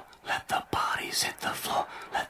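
A person whispering: a run of hushed, breathy words.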